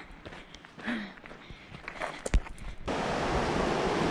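A few faint footfalls on a gravel track, then, about three seconds in, the steady rushing of a rocky mountain stream starts suddenly and becomes the loudest sound.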